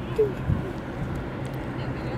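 Outdoor ambience: a steady low engine-like drone under a noisy haze, with a short voice sound just after the start and a soft thump about half a second in.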